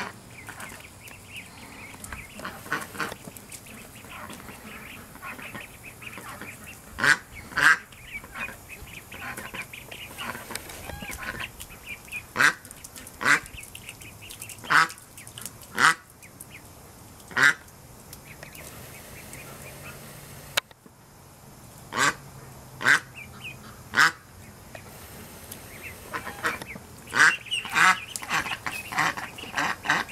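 Young ducks calling: a steady chatter of soft peeping, broken by about a dozen short, loud calls that come singly or in pairs.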